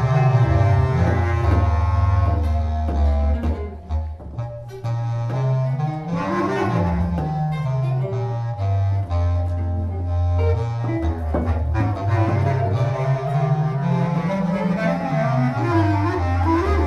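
Free-improvised music on bass clarinet, cello and guitar. Low, sustained notes step and slide in pitch. The playing thins out briefly about four seconds in.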